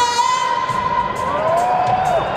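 A woman sings live through a stadium PA over a band, holding one long note for about a second before the pitch slides, while a large crowd cheers.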